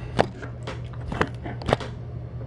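A few short, sharp clicks or taps over a steady low hum.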